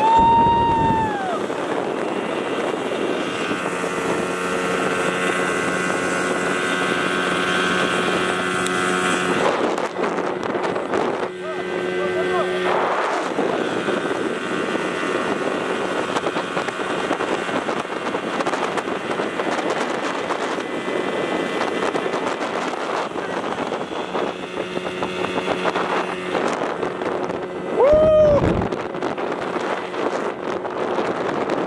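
A 30 hp outboard motor running at a steady high speed on a small speedboat, with wind buffeting the microphone and water rushing. A passenger's whoop falls in pitch right at the start, and another short whoop comes near the end.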